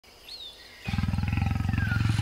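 A big cat growling: a low, rapidly pulsing rumble that starts about a second in, after a faint bird chirp.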